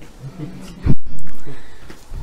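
A loud, short, low thud about a second in, cut by a split-second dropout and followed by a low rumble that fades away.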